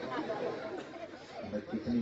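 Low chatter of several voices from a seated audience, with no clear words, and a brief louder voice near the end.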